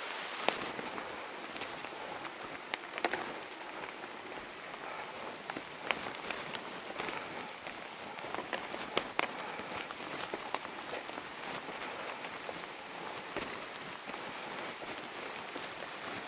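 Steady rain falling through leafy forest, with scattered sharp drops ticking close by.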